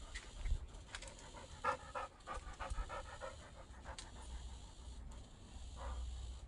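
Dog panting in quick, even breaths.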